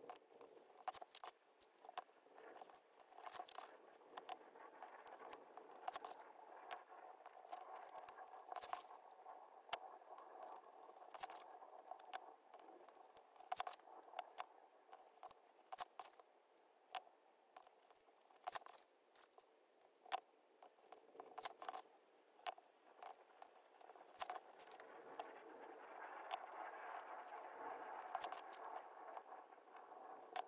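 Faint, irregular clicks, taps and rustles of paper being handled, folded and creased against a steel ruler on a cutting mat.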